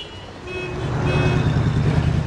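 Street traffic: a car engine rumbles, growing louder about half a second in. Two short, high beeps sound over it, about half a second apart.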